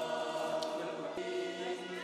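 Quiet background music of sustained, choir-like held tones.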